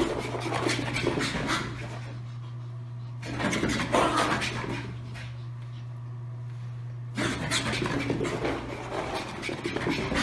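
Small dogs, one a Bichon Frise, panting in three bursts: near the start, around four seconds in, and through the last three seconds, over a steady low hum.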